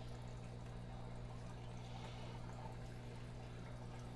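Faint, steady running-water trickle from an aquarium's filtration, over a low steady electrical hum from its pump.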